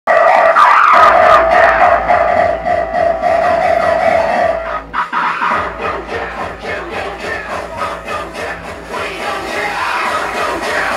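Loud psytrance dance music with a steady kick-drum beat. A held synth tone runs through the first half, the track drops out briefly about five seconds in, and then the beat comes back.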